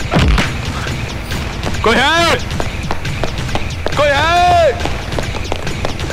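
A man's voice from the film soundtrack crying out loudly for help in long, drawn-out shouts, about two seconds in and again about four seconds in. Short thuds and knocks sound beneath the cries.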